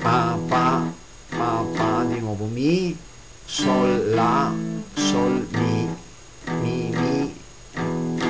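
Guitar playing a slow blues riff on E: chord stabs and low bass notes (E, G, A, G, E) in short phrases with brief pauses between. One low note slides down and back up in pitch about two and a half seconds in.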